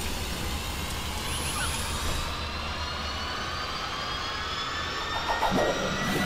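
Cinematic logo-reveal sound effect: a whooshing rush with tones that slowly rise in pitch, and a brief clatter of metallic hits near the end as the pieces come together.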